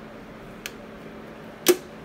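A magnetic digital kitchen timer snapping onto the stainless-steel housing of an electric stirring pot: one sharp click near the end, after a softer tap about two-thirds of a second in, over a faint steady hum.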